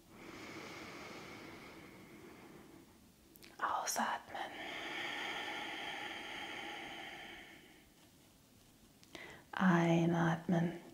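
A woman breathing audibly close to a clip-on microphone during a slow guided breath. A faint inhale comes first, then about four seconds in a long, breathy exhale through the mouth lasting about three seconds. A short spoken word comes near the end.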